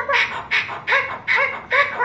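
Cockatoo giving a rhythmic run of short, pitched calls, about five in two seconds, each rising and then falling in pitch.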